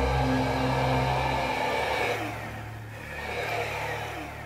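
A sustained, ominous soundtrack music drone fades out about a second and a half in. It is followed by a quieter electric motor whir with slight rises and falls in pitch, consistent with a powered wheelchair's drive motor as it moves.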